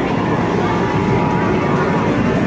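Loud indoor arcade din: background music and the chatter of a crowd, with a steady held tone over it.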